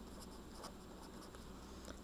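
Faint sound of a pen writing a word on a sheet of paper.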